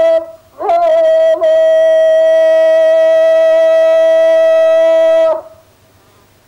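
Music: a wind instrument holding one long note at a steady pitch, rich in overtones. The note breaks off briefly at the start, comes back with a slight scoop up into pitch, and stops abruptly near the end.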